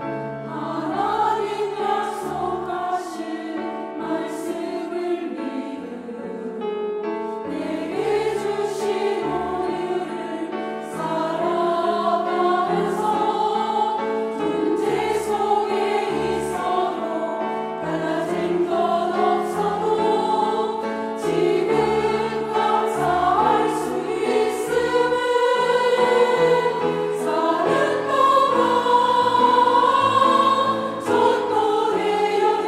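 Women's church choir singing a Korean sacred choral anthem over sustained instrumental accompaniment, growing louder toward the end.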